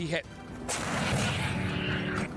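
A heavy vehicle-mounted gun fires once about two-thirds of a second in, followed by a long rumbling echo, with a steady engine note underneath.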